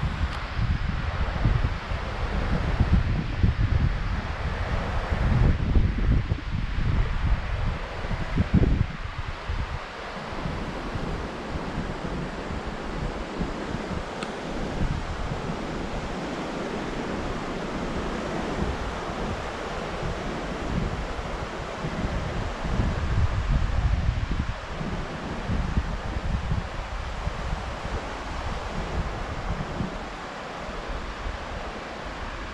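Wind buffeting the camera microphone over the steady wash of surf breaking on the beach. The low rumbling gusts are heaviest through the first ten seconds and again about 23 seconds in.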